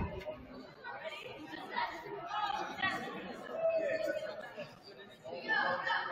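Indistinct chatter of several voices in a large school gymnasium, with one short thump right at the start.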